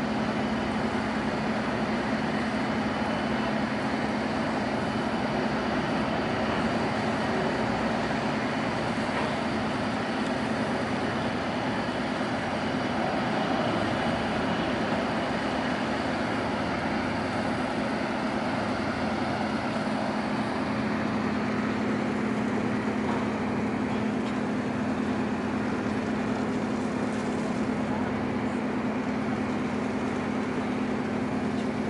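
Diesel machinery of a large crab-fishing boat running steadily, with a constant low hum, over the splash of water pouring from a deck discharge pipe.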